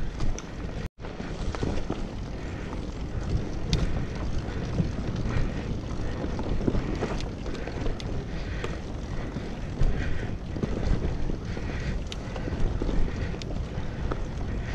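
Bicycle riding along a forest dirt trail: tyres rumbling over packed earth and dry leaves, with frequent short rattles and knocks from the bike over bumps and wind buffeting the action camera's microphone. The sound cuts out for an instant about a second in.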